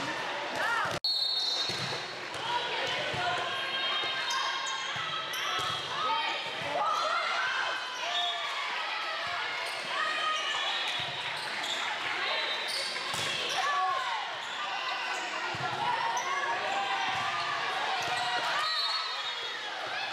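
Players and spectators talking and calling out in a large gym, with the sharp hits of a volleyball during a rally. The sound cuts out for a split second about a second in.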